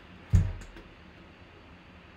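A single dull thump about a third of a second in as a full-size football helmet is handled and knocked, followed by faint clicking handling noise.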